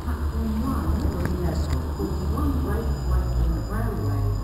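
Railway station platform sound: a steady low rumble under indistinct voices, with footsteps.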